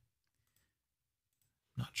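A few faint computer-mouse clicks in a quiet room, then a man's voice starts speaking near the end.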